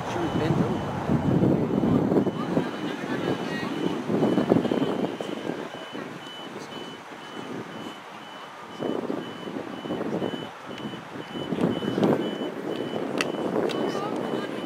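A vehicle's reversing alarm beeping steadily, a high beep about twice a second, starting a few seconds in. Voices on the field are louder over it, most of all in the first few seconds.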